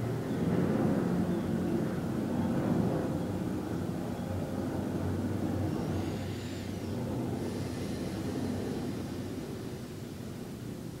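Low rumble of a passing motor vehicle outside, swelling in the first few seconds and slowly fading away.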